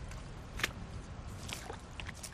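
Footsteps squelching and splashing through shallow water over soft tidal mud, a few steps a little under a second apart, as a loaded sea kayak is hauled along on foot.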